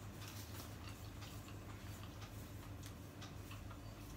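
Faint, irregular little clicks and crackles of hands shelling seafood at a plastic-covered table, over a steady low hum.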